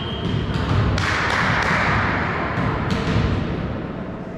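Referee's whistle, one long steady blast that ends about half a second in, followed by dull thumps and general noise in a reverberant sports hall.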